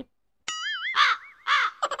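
A crow cawing, about three short caws in a row starting about half a second in.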